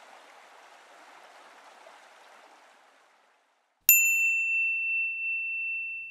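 A single bright, bell-like ding struck about four seconds in. Its higher overtones die away almost at once while one clear high tone keeps ringing. Before it there is a faint hiss that fades to silence.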